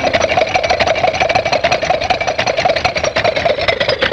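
Cartoon sound effect of a jalopy's engine running as the car drives along: a fast, even putt-putt rattle over a wavering hum.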